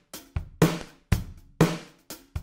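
Electronic drum loop from an Ableton Live Drum Rack, played dry with its return-chain reverb, saturation and delay switched off. Kick, snare and hat hits fall about two a second, each dying away quickly.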